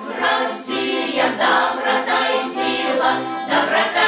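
Mixed folk vocal ensemble, mostly women's voices with a few men's, singing a Russian folk-style song together, held notes changing about twice a second.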